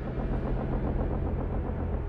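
Cartoon spaceship engine drone for the Decepticon warship Nemesis: a low, steady rumble with a constant hum.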